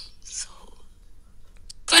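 Mostly a pause in a woman's talk: a faint breath about half a second in and a small click near the end, then her voice starts again.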